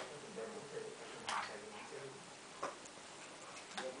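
A few sharp, irregularly spaced taps and clicks on a wooden parquet floor, about a second apart, as a puppy plays with a small ball.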